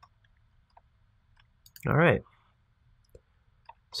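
Faint, scattered computer mouse clicks, with one brief vocal sound about two seconds in.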